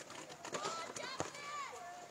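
Raised voices calling out on an open football pitch, in rising and falling shouts, with a few sharp knocks, the loudest about a second in.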